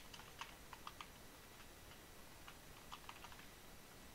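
Faint typing on a computer keyboard: a quick run of keystrokes, a pause of about a second, then a few more.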